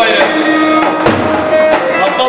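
Live halay dance music: a davul bass drum beaten with a stick under an amplified melody of held, sliding notes, with a louder drum stroke about a second in.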